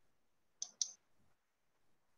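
Two quick clicks about a fifth of a second apart, with near silence around them.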